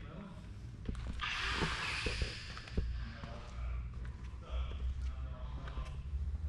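Handheld camera handling and footsteps over a steady low hum, with a hiss lasting about a second, starting about a second in, and a few light knocks.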